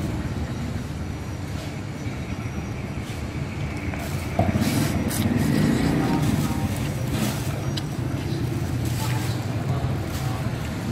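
Steady low engine rumble, like a running vehicle, with a few light clicks and faint voices around the middle.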